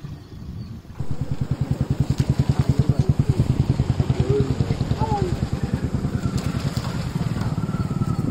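A small engine starts up about a second in and runs at idle with an even, rapid pulse, while people's voices sound over it.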